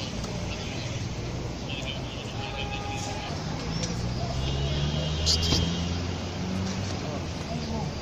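Men's voices talking low over a steady rumble of street traffic, with a brief sharp sound a little past the middle.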